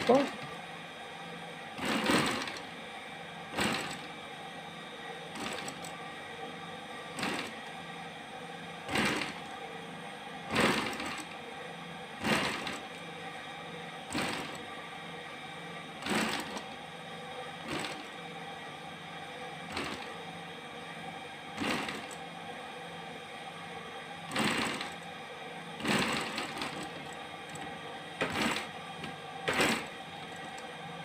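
Industrial sewing machine with its motor humming steadily, broken every one to two seconds by a short loud burst of noise as the bag is worked at the needle.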